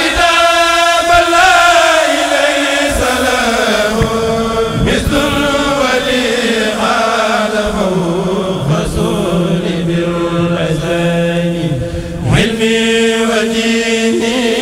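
Men's voices of a Mouride kurel chanting an Arabic khassida a cappella through microphones, in long held notes that slide slowly down. There is a short break about twelve seconds in, and then a new phrase starts higher.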